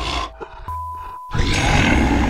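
Eerie music bed with a single held tone, broken by a brief silence, then a loud, rough growl sound effect that starts suddenly about a second and a half in.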